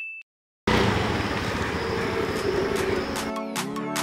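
A ding sound effect rings and cuts off at the very start. After a short silence a loud, steady outdoor noise like street traffic comes in, and background music with a steady beat starts a little over three seconds in.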